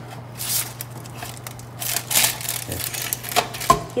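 Metal tongs scraping and crinkling the aluminium foil on a toaster oven tray as toasted pandesal are lifted out, in several short scrapes and rustles over a faint steady low hum.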